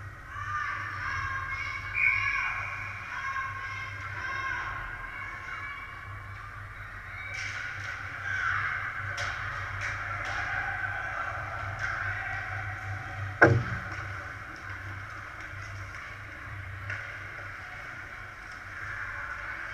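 Ice hockey game sound in an echoing indoor rink: distant shouts, skates and sticks on the ice over a steady low hum, with a few sharp clacks and one loud bang about thirteen seconds in.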